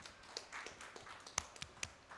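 Sparse, scattered handclaps from a small audience: about a dozen separate, out-of-step claps over two seconds, one louder than the rest about one and a half seconds in.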